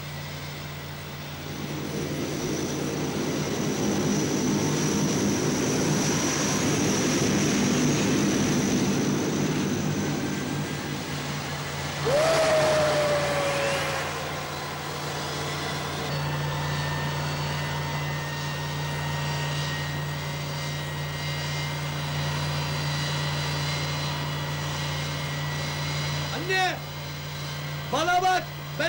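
Jet airliner engines running on an airport apron: a steady low drone under a high turbine whine that swells and fades over the first ten seconds. About twelve seconds in the sound turns suddenly louder with a falling tone, then settles back into a steady engine drone.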